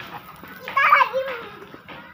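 A young child's voice: one short, high call or shout about a second in, with faint background noise around it.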